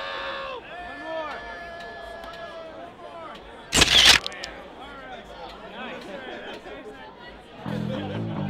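Group chatter and laughing voices, broken about halfway through by one loud, sharp camera-shutter snap. Music starts near the end.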